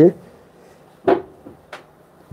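A single sharp tap a little over a second in, then a fainter one: a finger tapping on the touchscreen of a large interactive display.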